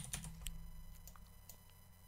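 A few faint, sparse clicks from a computer keyboard and mouse, over a low steady hum.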